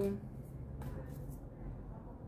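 Faint, soft rustling of a small deck of Lenormand cards being shuffled by hand, with a few soft strokes about a second in, over a low steady hum. The tail of a spoken word is heard at the very start.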